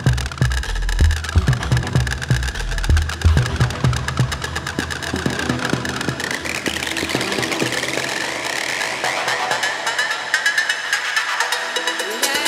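Tech house DJ mix: a four-to-the-floor kick and bassline pump for the first few seconds, then the kick and bass drop out. A rising sweep builds through the rest into a breakdown.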